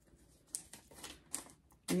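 A small slip of paper being folded and creased by hand, giving a handful of short, sharp crinkles spread over the two seconds.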